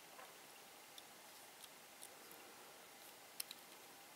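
Near silence with a few faint clicks of plastic Lego pieces being handled, and a sharper double click about three and a half seconds in.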